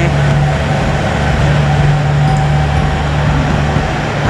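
Diesel engines of a JR Central KiHa 85 limited express railcar running with a steady low drone as the train pulls away from the platform.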